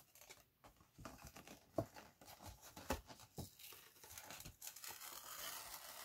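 Faint tearing and crinkling of cardboard and paper wrapping as a card-game bundle box is worked open by hand, with scattered small clicks and a steadier rustle building in the last couple of seconds.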